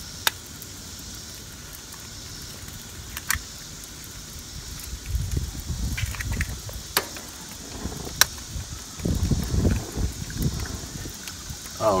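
A few sharp taps as raw eggs are cracked open over a gas grill, over a steady faint hiss, with bouts of low rumbling noise in the second half.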